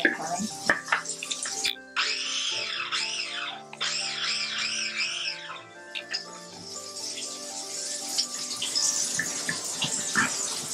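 Rubber spatula scraping and stirring a wet chopped mixture against the sides of a plastic food-processor bowl, in two bursts a few seconds in, over steady background music.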